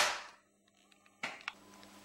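A book dropped from high smacking flat onto a wooden floor, one sharp slap that dies away quickly; two small knocks follow a little over a second later.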